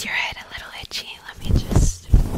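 Close-up whispering into the microphone, then near the end gloved fingers begin rubbing and scratching the fluffy microphone windscreen, giving a low, uneven rustling rumble.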